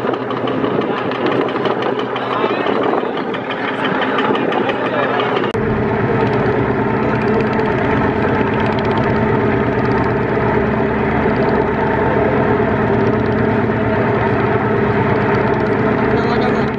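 Diesel engine of a crowded wooden river trawler running steadily at speed, with people's voices mixed in over the first few seconds. About five seconds in the sound changes abruptly to a closer, steady engine note that continues to the end.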